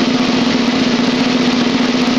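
A steady, unbroken snare drum roll.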